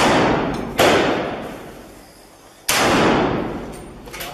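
Two gunshots fired inside a building, about 0.8 s in and 2.7 s in, each followed by a long reverberating decay. The tail of another shot fired just before is still dying away at the start.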